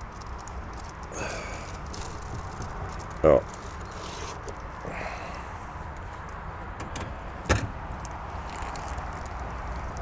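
Handling noises at an open wooden beehive: soft rustling as a plastic-wrapped fondant feed pack is lifted out, with one sharp knock about three-quarters of the way through.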